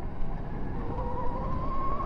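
Rawrr Mantis X electric dirt bike motor whining, its pitch rising slowly as the bike accelerates, over a low rumbling noise from the ride.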